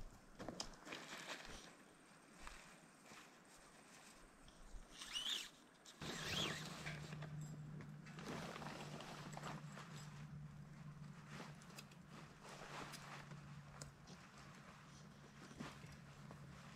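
Faint rustling of tent fabric with small knocks and clicks of tent poles as a dome tent is pitched, with a few footsteps.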